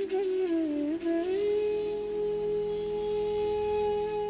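Intro music: a flute melody with small ornamented turns that settles about a second and a half in on one long held note over a steady low drone.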